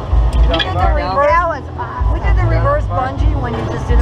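Two women shrieking and laughing on a thrill ride, their voices swooping up and down in pitch in two bursts. Under the voices, heavy wind buffets the microphone in gusts.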